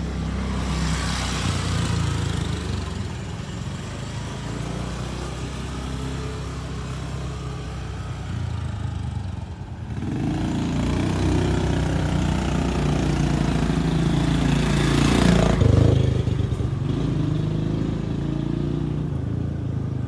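Motor scooter engines buzzing as the scooters ride down the alley toward the listener. The sound grows louder from about halfway through and peaks as they pass close by about fifteen seconds in, the engine pitch dropping as they go past.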